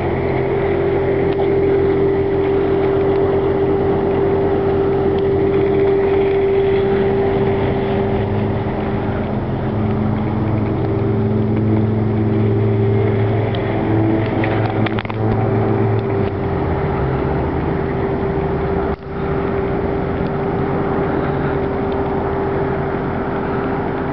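A motor running steadily at idle, a constant hum at one pitch, with its lower tones shifting briefly around the middle.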